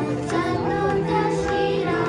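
A group of young girls singing a Carnatic devotional song in unison, with a few sharp taps in the accompaniment.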